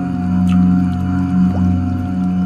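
The Om mantra chanted in a deep voice and held as one long, steady hum, set in meditation music.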